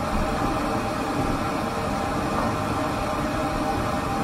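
Pet grooming dryer running with the warm air on: a constant blowing noise with a faint steady motor hum.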